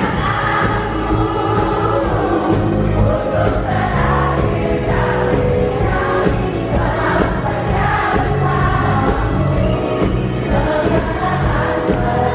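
Live pop band playing through a PA system with a singer, and the audience singing along, heard from inside a packed, reverberant indoor crowd.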